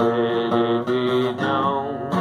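A man singing a long held note over a strummed steel-string acoustic guitar, moving to a new pitch near the end.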